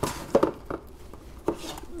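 Plastic DVD cases being handled on a shelf: a few light clicks and knocks as one case is put back in the row and the next is pulled out.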